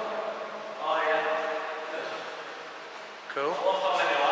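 Indistinct male voices talking, with the voice fading out in the middle and speech starting again near the end.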